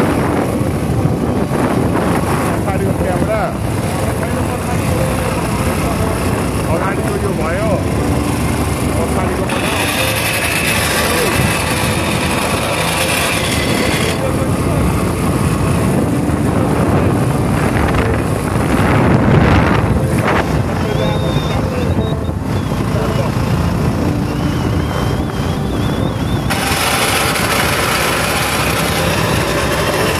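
Bajaj Platina motorcycle running along the road with three riders aboard, its engine and road noise mixed with wind on the phone's microphone. A louder hiss swells up twice for a few seconds.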